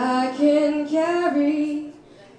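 A woman singing a line of a song, her voice sliding up into the first note and then holding a few sustained notes before the phrase ends just before the close.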